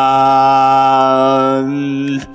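A man singing one long held note, steady in pitch, as the final note of a pop-rock song.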